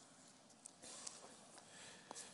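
Near silence with a faint rustle of Bible pages being leafed through by hand, growing slightly a little under a second in.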